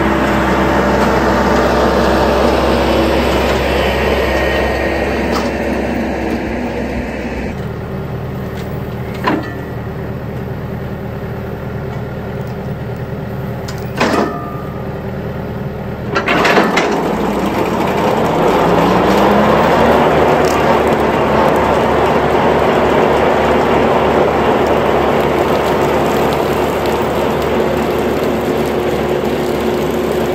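A tractor engine runs steadily while pulling a Rhino TS10 flex-wing rotary mower. After a drop in level and a couple of short clicks, the mower's blades are engaged about halfway through. They spin up with a rising whine over about three seconds, then settle into a steady run.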